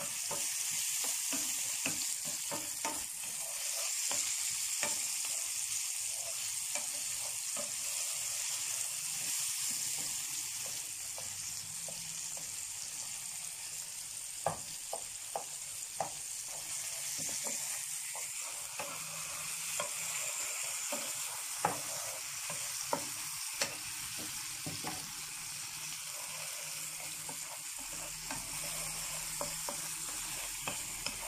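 Diced onion and tomato sizzling in oil in a non-stick frying pan, the tomatoes cooking down as they are stirred with a wooden spoon. A steady hiss, with the spoon clicking against the pan now and then, most often in the middle stretch.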